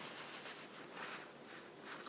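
Faint rustling and rubbing of a paper towel as greasy fingers are wiped.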